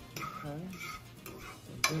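A fork stirring scrambled eggs in a skillet, scraping and clinking against the pan, with one sharp clink near the end.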